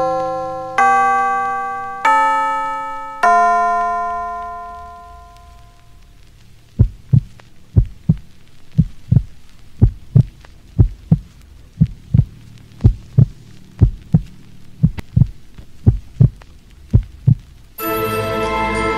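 Spooky background music: a few slow, ringing bell-like notes that die away, followed from about seven seconds in by a steady heartbeat-like pulse of low double thumps, roughly one pair a second.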